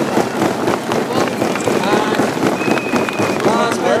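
Crowd applause: many hands clapping in a dense, steady clatter, with voices mixed in.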